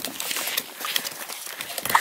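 Redbone Coonhound puppies suckling from their nursing mother: a run of small, irregular wet smacking clicks.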